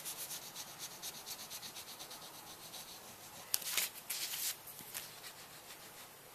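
A hand tool rubbing rapidly back and forth on paper in short, quick strokes, about six a second. A few louder, longer strokes come about three and a half seconds in.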